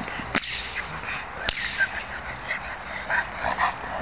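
Two sharp whip cracks about a second apart near the start, a protection-training helper agitating a Rottweiler. Fainter short knocks and patters follow as the dog runs on its leash.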